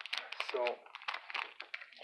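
Plastic hockey card pack wrapper crinkling and crackling in quick, irregular snaps as the pack is torn open and the cards are pulled out.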